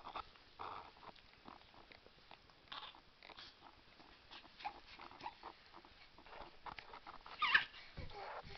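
A baby's short, soft vocal sounds, little coos and grunts, with a louder brief squeal near the end.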